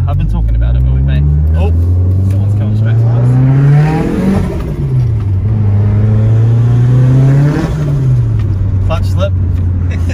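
Car engine heard from inside the cabin, pulling with a rising pitch for about four seconds, dropping at a gear change, rising again through the next gear, then falling back and holding steady near the end.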